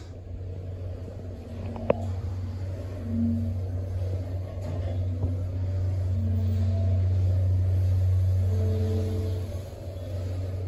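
Hydraulic elevator's pump motor running with a steady low hum as the car travels up, with a sharp click about two seconds in. The hum drops away near the end as the car slows to level at the floor.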